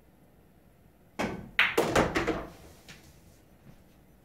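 A pool shot: a cue tip strikes the cue ball about a second in, then a quick run of billiard balls clicking together and knocking off the cushions over about a second, ending with a last faint click.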